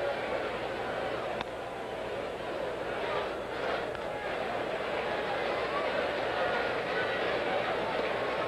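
Ballpark crowd murmuring steadily, with a single sharp pop about a second and a half in: a pitch smacking into the catcher's mitt.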